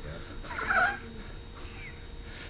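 A short breathy chuckle about half a second in, then quiet room tone.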